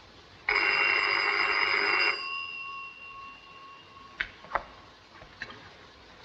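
A telephone bell rings once for about a second and a half, with a rattling ring and several steady tones that fade away after it stops. A few faint clicks follow near the end.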